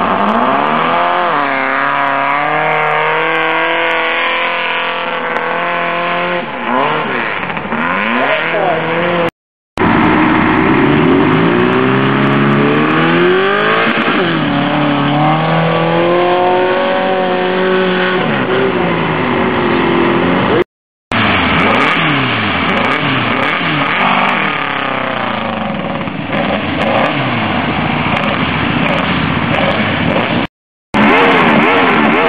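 Sand-rail dune buggy engines revving hard on hillclimb runs up a sand dune, the engine note rising and falling again and again as they accelerate. The sound cuts out completely for a moment twice.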